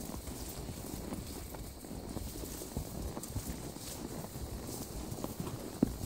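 Horses' hooves walking on a rocky dirt trail: an irregular clip-clop of knocks, with one sharper knock near the end.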